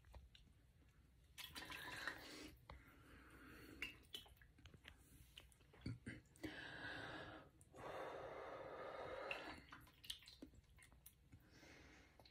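Faint heavy breaths and small mouth and lip sounds from a person drinking from a plastic shaker bottle, with three longer breaths a little over a second in, about six and a half seconds in, and about eight seconds in.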